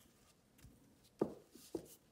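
Wooden rolling pin working dough on a silicone baking mat: a faint rubbing at first, then two soft knocks just over a second in, about half a second apart.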